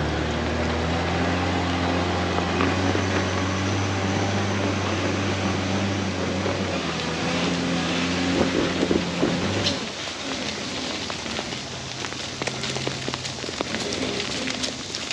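A Toyota 80-series Land Cruiser's engine running at low, steady revs on an off-road trail, with a continuous crackling, spattering noise. The engine note drops away about ten seconds in, leaving the crackling.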